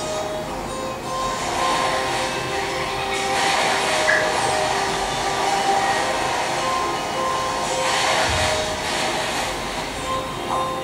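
Soundtrack of a projected short film heard through room speakers: sustained music notes over a rushing noise that swells about three seconds in and again near eight seconds.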